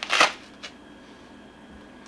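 A short burst of rustling as a lined trapper hat is pulled down and adjusted on the head, followed by a faint tick a little over half a second later.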